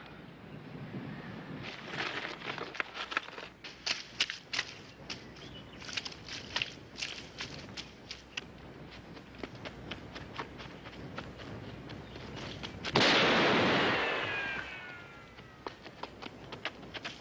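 Boots scuffing and clattering over rock and gravel as someone scrambles between boulders. Near the end comes a single gunshot, followed by a ricochet whine that falls in pitch as it fades.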